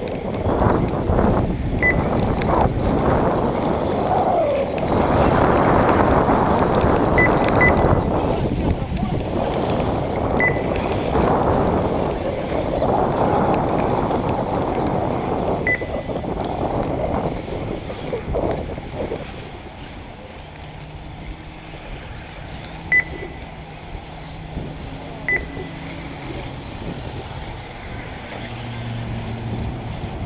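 Wind buffeting the microphone in strong, uneven gusts that ease off after about two-thirds of the way through. Short high electronic beeps sound now and then over it.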